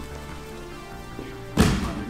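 Background music, with a single loud thump about one and a half seconds in as a grappler is rolled over and lands on the foam mat.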